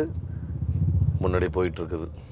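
Low rumble of road and tyre noise inside the cabin of a moving Toyota Vellfire hybrid, strongest through the first second. A man speaks briefly near the end.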